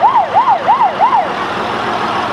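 Fire engine siren yelping, a fast up-and-down wail about four times a second, which cuts off about a second and a half in, leaving steady vehicle running noise.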